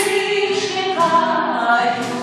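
A woman singing a tango, her voice holding long notes.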